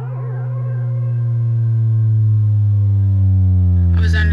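Electronic music: a sustained synthesizer drone on a low note that swells steadily louder, its upper tones slowly gliding downward in pitch.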